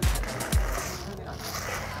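Stiff plastic bristle roller of a homemade cigarette-butt picker rolling over asphalt, a steady rough scraping with two low thumps near the start, under background music.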